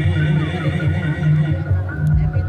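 Javanese gamelan accompaniment for a reog wayang dance, played over loudspeakers, with steady low held notes and a high wavering voice warbling over them.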